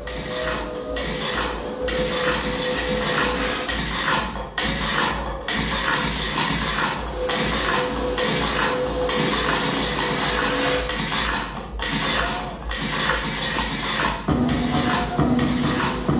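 Electronic dance music from a DJ set played loud over a club sound system: a steady kick-drum beat under busy metallic percussion and a held synth tone. About fourteen seconds in, a deeper bassline comes in.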